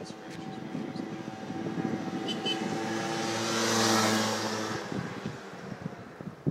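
Small gas-powered scooter engine running steadily as it rides up and past, growing louder to a peak about four seconds in, then fading as it moves away.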